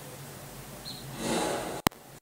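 Faint steady room hum with a short breathy rush of noise a little past the middle, then a single sharp click near the end.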